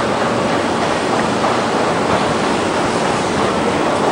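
A steady rushing noise at an even level, with no distinct call or knock standing out.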